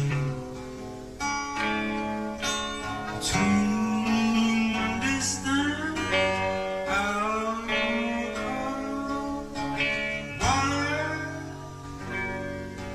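Guitar music: plucked guitar notes in a slow tune, some of them bending upward in pitch.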